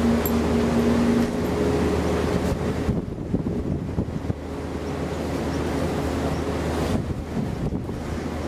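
A tour boat's engine drones steadily under wind rushing on the microphone. A steady hum over it stops about a second in.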